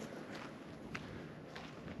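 Faint footsteps of a person walking on dry grass and dirt: a few soft steps about half a second apart.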